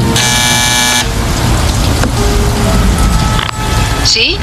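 Pickup truck engine running under background music. A loud, steady blaring tone lasts about a second at the start.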